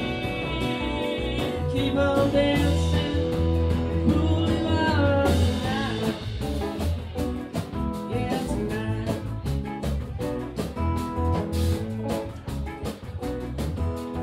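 Live blues-rock band playing, with acoustic and electric guitars over bass and drums. A few notes slide in pitch about five seconds in, and the drum hits stand out more in the second half.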